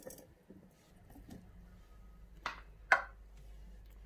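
Two short, sharp clicks about half a second apart, the second louder, from handling a glass jar packed with black olives and coarse salt. Under them is a faint low hum.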